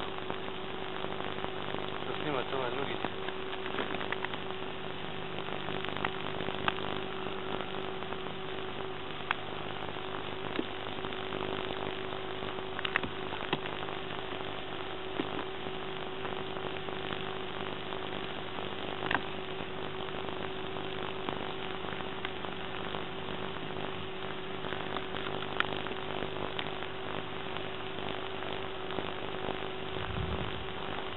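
Steady electrical hum with hiss and a few faint clicks, the background noise of an old camcorder's soundtrack.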